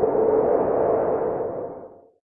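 Synthetic intro sound effect under a logo animation: a rushing, swelling whoosh with a steady tone in it, fading out near the end.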